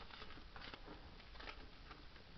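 Faint rustling with scattered light ticks of Pokémon trading cards and a booster pack being handled.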